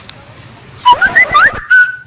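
A dog whining: a quick run of short, high-pitched rising whimpers about a second in, ending in one held high whine.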